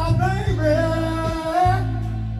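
A man singing a long held note over a slow blues accompaniment with guitar and a steady bass line.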